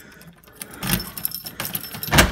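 A front door being knocked and rattled from outside: a sudden knock about a second in, then light rattling with metallic clinks.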